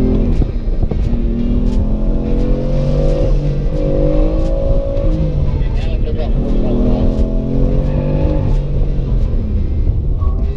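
BMW M car's engine heard from inside the cabin, revving up and dropping back about three times as the car is accelerated hard and eased off through a coned course.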